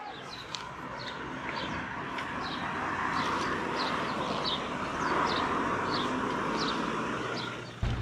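Street traffic noise that builds and then fades, with a small bird chirping short falling notes about twice a second.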